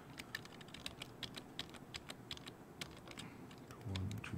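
Computer keyboard being typed on, a run of irregular key clicks, several a second.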